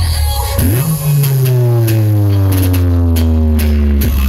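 Loud electronic dance music with heavy bass played through a carnival parade sound system. About a second in, a deep bass tone swoops up and then glides slowly downward.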